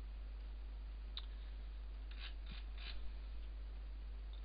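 Faint clicks from a computer mouse: one about a second in, then a quick run of about four between two and three seconds in, over a steady low electrical hum.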